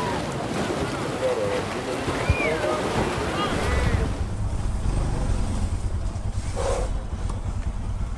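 Sea waves washing in, with wind buffeting the microphone. About halfway through, the sound changes to a motorcycle riding along, a steady low engine sound under the wind.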